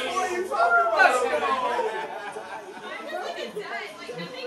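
A group of people shouting and cheering together, loudest about a second in, then settling into excited overlapping chatter.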